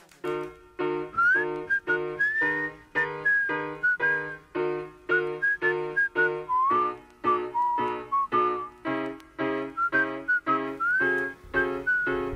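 Hip-hop beat opening with no vocals: short chord stabs over a bass note, repeated about twice a second, with a whistled melody gliding above them. The chords and bass shift to a lower pattern about halfway through.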